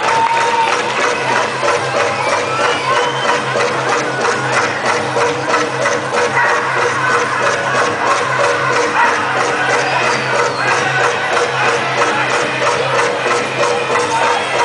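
Powwow drum group performing a men's chicken dance song: a large drum struck in a fast, steady beat under several men singing together in high, wavering voices.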